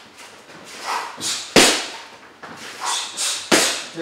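Punches from a boxing glove smacking into a focus mitt during a slip-and-counter drill: two sharp smacks about two seconds apart, each led by softer sounds of quick movement.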